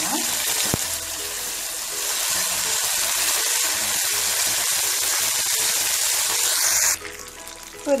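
Freshly ground wet mint and coriander paste sizzling in hot oil in a kadai, a loud steady hiss of frying that cuts off abruptly about seven seconds in.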